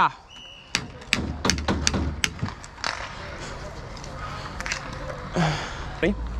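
Roller hockey play: a run of about seven sharp clacks and knocks of sticks, puck and boards in the first three seconds, then a short shout from a player near the end.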